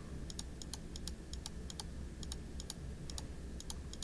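About fifteen faint clicks, many in close pairs, as a sum is entered key by key into a calculator program on a computer.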